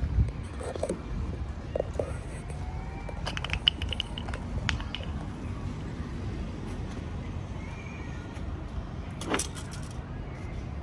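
A few light metallic clinks and a brief jingle about three to four seconds in, another clink a second later and a sharp one near the end, over a steady low rumble.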